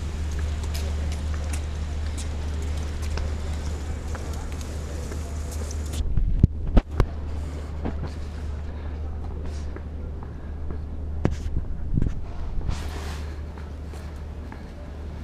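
Wind and handling noise on a body-worn camera microphone while walking: a steady low rumble with hiss. A few loud knocks come about six to seven seconds in, and two more near the end.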